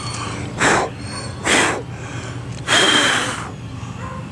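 A person blowing three puffs of breath at close range onto pollen-coated car glass to blow the pine pollen off, the third puff the longest.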